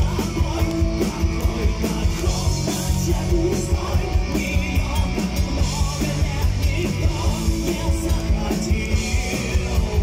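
A live rock band playing a song, with electric guitars, bass and drums keeping a steady beat, and the lead singer singing into the microphone over them.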